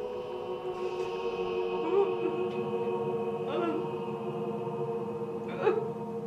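Background film score: a sustained, choir-like chord held steady, with three short wavering higher sounds over it, about two, three and a half and five and a half seconds in.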